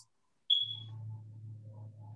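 A single short, high electronic ping, like a computer notification chime, about half a second in, over a steady low electrical hum.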